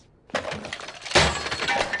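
Something being smashed: breaking glass and clattering objects start suddenly, with a heavier crash just over a second in and clinking debris after it.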